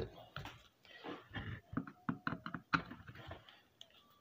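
Light clicks and knocks of hands handling a black plastic gear-motor housing and setting a screwdriver into one of its screws.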